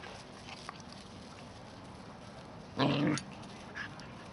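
A dog gives one short, low growl about three seconds in, a play growl as the dogs tussle.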